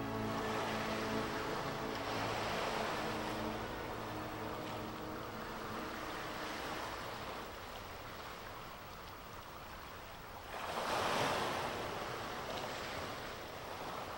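Ocean waves washing in slow rushes, with a louder surge about eleven seconds in. The tail of a synthesizer music track fades out under the first few seconds.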